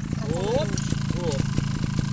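Trials motorcycle engines idling steadily, a low even drone, with people's voices over it.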